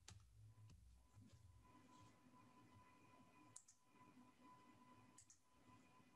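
Near silence with a faint steady hum, broken by a few faint computer keyboard and mouse clicks: one right at the start and two more about three and a half and five seconds in.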